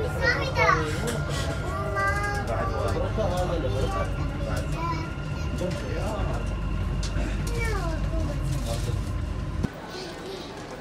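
Dubai Metro train running, a steady low rumble inside the carriage, with passengers' voices, children among them, chattering and calling over it; the rumble stops abruptly near the end.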